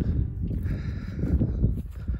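Footsteps on grass, carried through a handheld phone microphone with an irregular low rumble of wind and handling noise.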